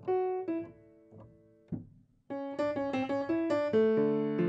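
Grand piano played solo in an improvisation: a few sparse notes and chords ring and fade, then after a short pause about two seconds in, a quick run of notes starts and grows louder.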